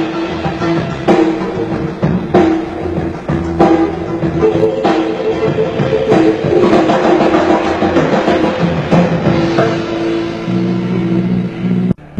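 Rock band playing live through a stage PA during a soundcheck run-through: drum kit strikes over electric guitar and bass.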